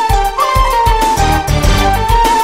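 Instrumental intro of a 1990s Turkish pop song: a lead melody line over a steady drum beat and bass, with no vocals yet.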